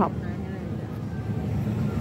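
Steady low hum of a supermarket's open refrigerated display cases, running evenly with no distinct events.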